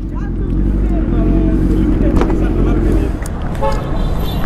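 Kawasaki Z900 inline-four engine idling steadily, with a short vehicle horn toot near the end.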